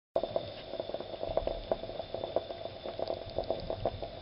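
Stovetop moka pot bubbling over a gas burner: a steady seething with a rapid, irregular run of small pops and gurgles as the water boils.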